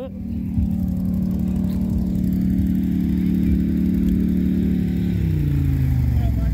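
A four-wheeler engine running at a steady speed with an even pitch, then falling in pitch about five seconds in as it comes off the throttle.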